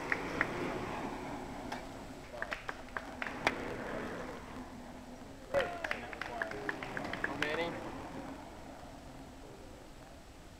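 Faint voices of roadside spectators calling out, with a few sharp clicks over quiet outdoor background noise.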